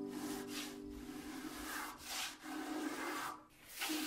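Miniature spokeshave shaving a small wooden guitar part by hand: a series of short rasping scrapes, about five strokes, with a brief pause before the last one.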